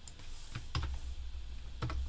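A few separate keystrokes on a computer keyboard, about three sharp clicks spread over two seconds, with a faint steady low hum underneath.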